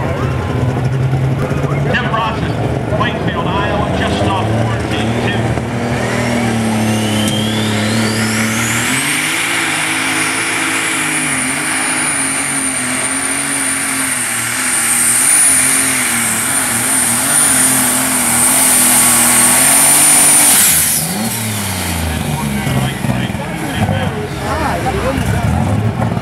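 Modified John Deere pulling tractor's engine idling, then throttled up for a pull. A turbocharger whine climbs to a high, steady pitch over the engine and holds for about eleven seconds, then the throttle is cut about twenty seconds in and the engine winds down.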